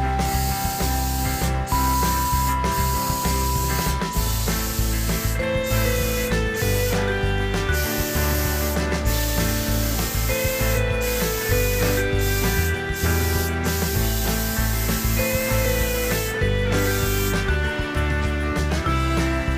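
Paint spray gun hissing in repeated passes. The hiss breaks off briefly between strokes.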